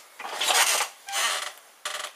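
Handling noise: two rasping rubs, each about half a second long, of shirt fabric brushing against the microphone as the camera is moved.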